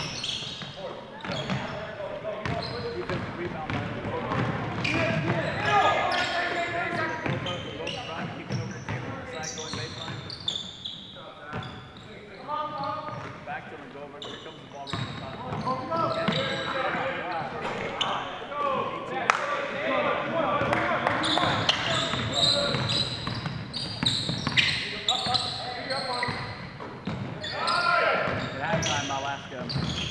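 A basketball bouncing on a hardwood gym floor during play, in short sharp knocks, with people's voices calling out across the gym.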